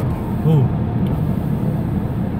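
Steady low rumble of a stationary car's engine running, heard from inside the cabin, with a man briefly saying "Who?" about half a second in.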